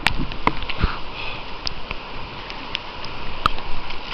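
River water sloshing and splashing right at the microphone as the camera bobs at the surface, with scattered sharp clicks and knocks.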